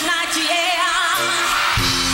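A high female voice singing live, wavering with vibrato, over a band; the band's low end swells in about a second and a half in.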